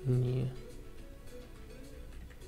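A man's short, low vocal sound lasting about half a second at the start, held on one pitch, over quiet background music.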